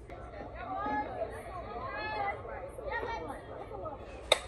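Indistinct chatter and calling of several voices, with no clear words.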